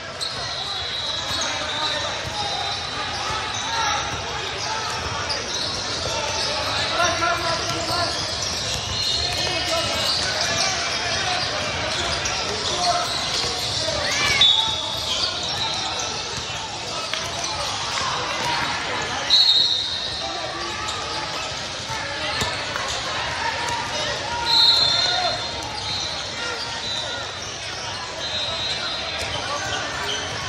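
Basketball game sounds in a large echoing hall: a ball bouncing on the court, short high shoe squeaks several times, and indistinct voices of players and onlookers.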